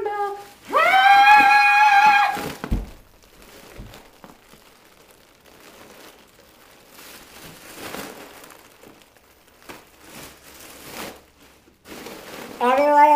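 A single high note sung and held for about a second and a half in a helium-altered voice, after helium is breathed from a foil balloon. Then the foil balloon crinkles and rustles as it is handled, with a thump just after the note.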